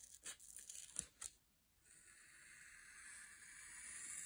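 Paper being handled, heard faintly: a few short, sharp rustles and crackles in the first second and a half. After a brief gap, a steady faint hiss follows.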